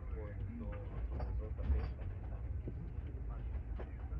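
Steady low rumble inside the cabin of an ATR 72-600 airliner on the ground, with faint murmuring of passengers' voices and a few light clicks.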